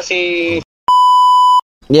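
An edited-in censor bleep: one steady, high electronic tone lasting under a second, switched on and off abruptly, about a second in, between stretches of a man's voice.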